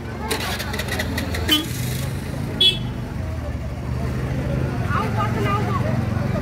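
A crowd of people talking and calling out over each other as a heavy load is carried by hand. There is a run of clicks and knocks in the first two seconds and a short high-pitched toot about two and a half seconds in.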